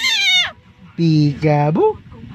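Baby's long, high-pitched squeal of laughter that falls in pitch and stops about half a second in.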